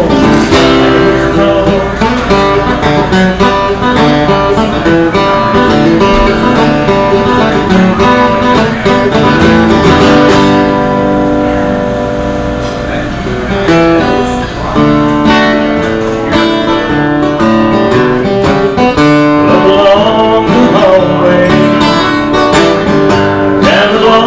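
Acoustic guitar played in an instrumental break of a country song, picked and strummed with no singing after the last sung word at the very start. The playing eases off and dips in loudness about halfway through, then picks back up.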